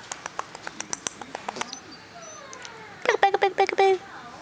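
A person making playful mouth noises at a baby: a quick run of sharp tongue clicks, then a loud string of short, high squeaky voice sounds over the last second.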